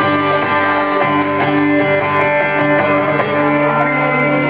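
Guitar music played live, an instrumental stretch of a song with held chords changing about once a second.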